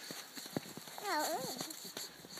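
Snow crunching in irregular soft taps as a mittened hand pats at a snowman, with a short, high-pitched vocal sound about a second in.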